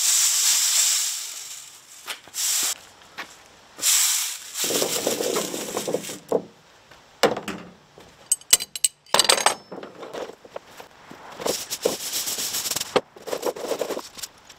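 Powder-coated cast 9mm bullets slide and rattle off a wire mesh tray in a loud, hissing rush for the first couple of seconds. After that come scattered rustles and quick clinks as the bullets are handled and spread on a towel.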